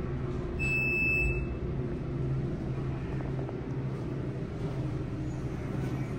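A single steady high electronic beep from the elevator, about a second long, its arrival chime, over a steady low hum.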